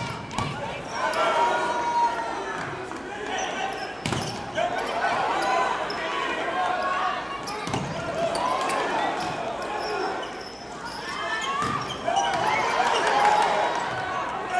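Volleyball hits during a rally: a handful of sharp smacks of hand on ball, roughly every three to four seconds, over shouting voices of players and crowd.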